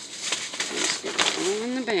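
Cardboard display boxes and paper seed packets being handled, with a few short clicks and crackles. A woman's voice comes in near the end.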